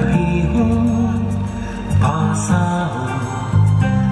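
Music: a song with a steady beat over sustained low tones.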